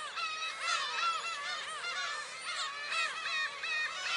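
A flock of black-tailed gulls calling over one another, many overlapping calls with no pause.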